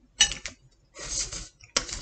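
Dishes and food packaging handled on a table: a short clatter, a brief rustle and another click.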